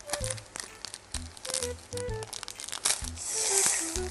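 Plastic wrapper of an Oreo cookie packet crinkling and crackling as it is torn open by hand, with a longer tearing rustle near the end. Quiet background music with a simple melody and bass notes plays underneath.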